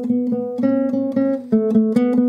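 Nylon-string classical guitar played as a tremolando scale: each note plucked several times in quick alternation by the index and middle fingers, about six plucks a second. The pitch steps up by a note or two and then comes back down.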